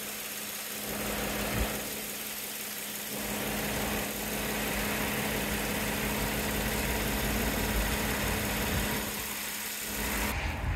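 2015 GMC Sierra 1500's engine idling steadily, heard from over the open engine bay.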